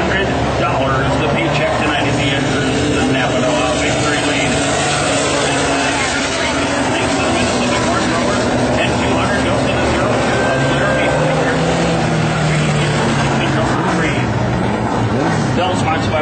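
WISSOTA Mod 4 four-cylinder dirt-track race cars running on the track, a steady engine note that slowly rises and falls, heard from the grandstand with voices mixed in.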